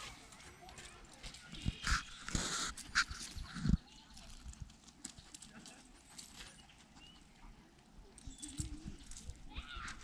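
A dog's paws scuffing and crunching on gravelly dirt as it moves about on a leash. The scuffs come in scattered bunches during the first few seconds and again near the end, with a quiet stretch between.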